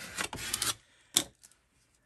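Paper scraps handled and pressed onto a collage card: rustling and rubbing through the first second, then one sharp tap.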